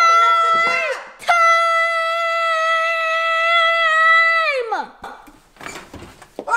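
A girl's voice holding a long, high, wordless shout on one pitch: a short one first, then one of about three seconds that slides down in pitch and breaks off.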